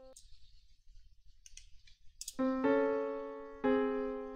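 A held electric-piano note cuts off at the start, followed by a couple of seconds of near quiet broken by a few sharp clicks. Then a piano-type keyboard theme begins, with a note struck about once a second, each one decaying. This is a composed melody line played under a line of on-screen text.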